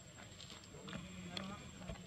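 A faint voice held for about a second in the middle, over a steady background hiss, with a few light clicks.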